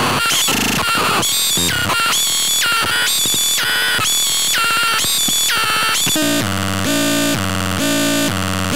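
Circuit-bent VTech Little Smart Tiny Touch Phone playing harsh, buzzy electronic tones that step between pitches about twice a second as its knobs are worked. A little after six seconds in, it switches to a lower, fuller stepping pattern.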